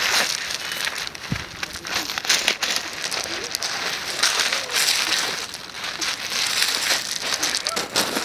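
Loose pebble gravel crunching and clattering under a person's hands and knees as she crawls and shifts her weight on it. The sound is a dense crackle of small clicks that swells in bursts a few times.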